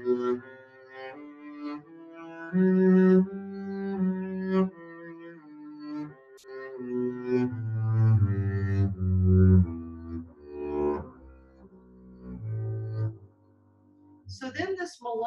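Double bass played with the bow (arco), sounding a slow scale of single sustained notes one after another, each lasting about half a second to a second. The playing stops about half a second before the end.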